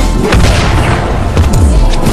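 A loud, deep boom sound effect from an animated fight. Low rumble carries through it, with sweeps that fall in pitch near the end, over background music.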